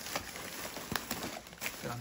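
Thin plastic trash bag rustling and crinkling as hands grab its knotted top to open it, with a few sharp crackles.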